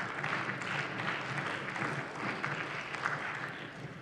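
Applause from members of parliament in a plenary chamber: steady clapping that eases off slightly near the end.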